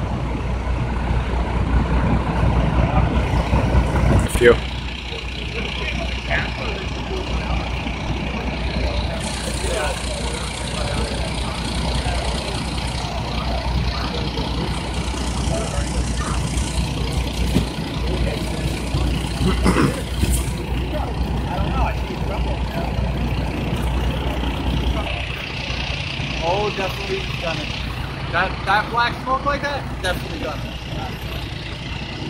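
Steady low rumble of idling vehicle engines, with scattered voices in the background and a little more talk near the end.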